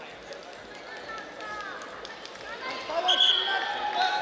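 Voices calling out across a large sports hall over its steady murmur, with a loud, high-pitched shout about three seconds in and faint scattered knocks.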